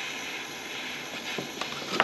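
Small handheld gas torch hissing steadily as its flame heats a steel nut and stud to melt solder into the joint, with a few faint ticks.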